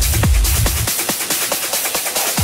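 Techno music mixed by a DJ: a four-on-the-floor kick drum with a steady bass, about four kicks a second, and hi-hats running on top. About a second in, the deep bass drops out, leaving a thinner beat and the hats.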